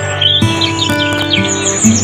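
Background music of soft held notes, with a run of quick bird chirps sounding over it.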